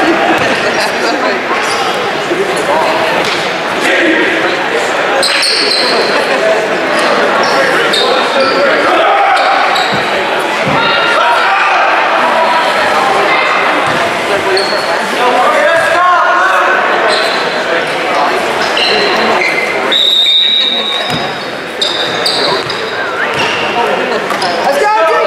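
Gymnasium hubbub: many spectators and players talking at once in a large echoing hall, with a basketball bouncing on the hardwood floor and a few short high squeaks.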